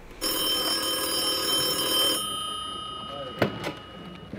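Telephone bell ringing for about two seconds, then the ring dying away.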